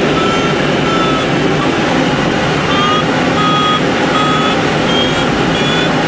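Glider's audio variometer sounding a series of short electronic beeps, about one and a half a second with a pause near the two-second mark, the sign that the glider is climbing in lift. Steady airflow noise over the canopy runs underneath.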